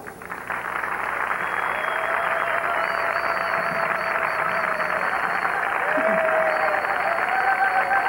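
Audience applauding and cheering as a song ends, a dense steady clatter of clapping with a few long held tones over it.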